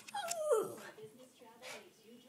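A terrier whining: one high whine falls in pitch over about half a second, followed by a fainter, lower whine and a short breathy sound near the end.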